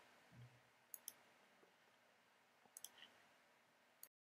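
Near silence with a few faint, sharp clicks: two about a second in and three close together near the end.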